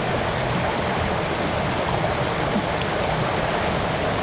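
Steady rush of water pouring over a low concrete ramp and churning in the channel below it.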